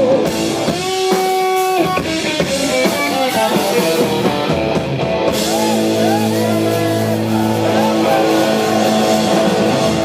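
Live rock band of electric guitar and drum kit playing, the guitar holding sustained notes and bending notes up and down over the drums.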